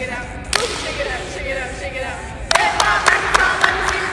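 Several sharp cracks: one about half a second in, then a quick run of them in the second half.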